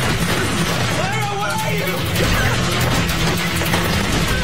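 Action score music with a steady pulsing low beat, mixed with fight sound effects and a short vocal sound, a man groaning, from about a second in.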